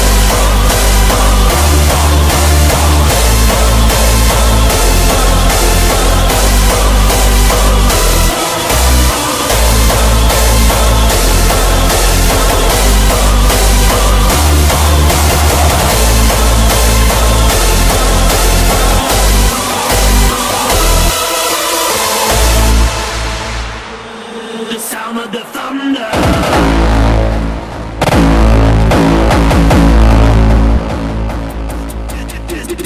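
Hardstyle dance music with a heavy kick drum and bass. About 23 seconds in the beat drops away to a short, quieter breakdown, and the full beat comes back a few seconds later.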